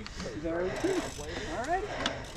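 A man's voice speaking indistinctly, quieter than the talk around it.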